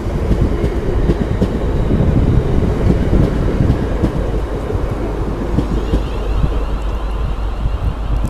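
Class 360 Desiro electric multiple unit running past and away along the platform: a steady rumble of wheels on rail and the carriages rushing by, easing slightly as the rear cab goes past.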